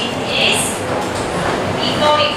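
Steady classroom background noise, an even hiss with faint, indistinct voices in it.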